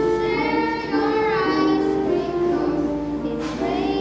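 Children singing a song, a melody of held notes that change about every half second.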